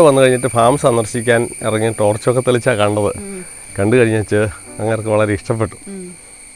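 People talking close to the microphone over a steady, high-pitched insect chorus that holds several thin, even pitches without a break.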